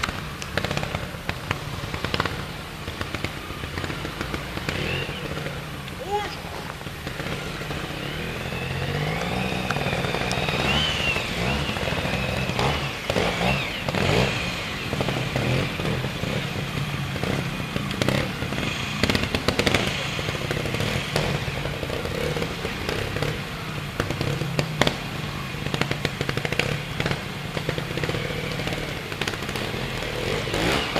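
Trials motorcycle engine running at low revs, the throttle opened and closed in short blips so the engine note keeps rising and falling, with sharp cracks and clatter mixed in as the bike works over rocks and roots.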